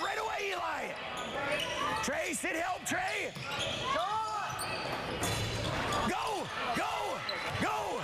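Basketball game play on a hardwood gym court: sneakers squeak in short rising-and-falling chirps, in clusters a couple of seconds in and again near the end, and a basketball bounces.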